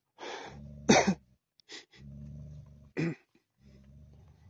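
Dogs at rough play: four short, sharp dog vocal bursts, the loudest about a second in and just before three seconds in, as a Tibetan mastiff mouths a puppy. A steady low hum sits underneath.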